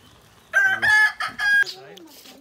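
A rooster crowing once, starting about half a second in: a loud call in three linked notes, over within about a second and a quarter.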